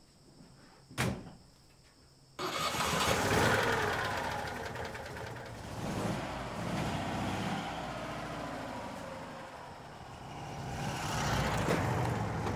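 A click about a second in, then an old Citroën's air-cooled flat-twin engine starts abruptly and runs, its revs rising and falling.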